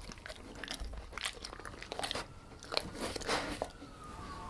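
German Shepherd chewing and working its mouth over food crumbs on a tabletop, a scatter of small crunches and wet mouth clicks.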